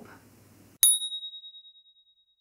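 A single high bell ding, a transition sound effect: struck sharply a little under a second in, then ringing in one clear tone that fades out over about a second.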